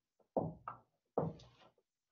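Marker writing a number on a whiteboard: three short knocks and strokes of the tip against the board within the first second and a half.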